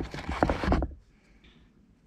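Fingers handling and rubbing the old fabric shift boot close to the microphone, with a few light knocks, for just under a second; then near quiet.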